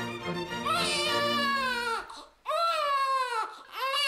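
Baby crying in three long wails, each sliding down in pitch, with short breaths between, over background music that stops about two seconds in.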